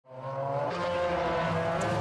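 Mazda MX-5 race cars' engines running at a steady pitch on the circuit, fading in from silence at the start.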